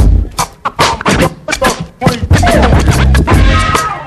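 Turntablists scratching vinyl records in fast, chopped strokes over a beat with heavy bass, several turntables at once in a live turntablism routine.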